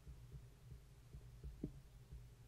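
Near silence: a steady low hum with faint soft knocks from a stylus writing on a tablet, one a little louder near the end.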